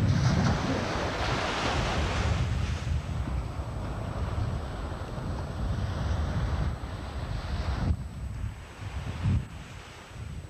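Surf washing on a beach, with wind buffeting the camcorder microphone in a low rumble. The rush is strongest in the first few seconds and dies down toward the end.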